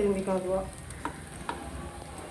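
Nei appam batter frying in the oil of a cast appam pan, a soft steady sizzle. A metal spatula clicks lightly against the pan twice as the appams are turned, about a second in and again half a second later.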